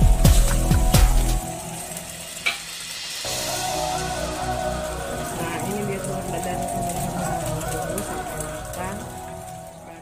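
Egg omelette sizzling as it fries in oil in a steel wok, under background music. The music is loudest in the first second and a half, with a heavy bass beat.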